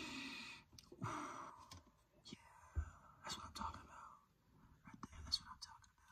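Quiet breathy sounds from a person holding an open ice-cream pint close to his face, coming in a few soft stretches with short silent gaps, with a few faint clicks from handling the carton.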